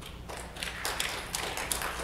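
Irregular run of light taps and clicks, getting louder about half a second in, over a steady low hum.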